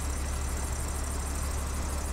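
City bus standing at a stop with its engine idling: a steady low rumble under an even hiss of street noise.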